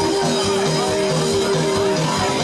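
Live rock band playing, electric guitars, keyboard, bass and drums, with one long held note over a steady beat.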